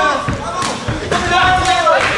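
Loud shouting from corners and spectators, with a few sharp smacks of kickboxing punches and kicks landing.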